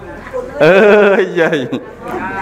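A man's voice drawing out one long, wavering, half-sung syllable for about a second in the middle, with softer speech around it.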